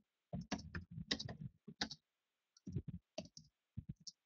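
Irregular clicks and taps in short runs, coming in three bursts.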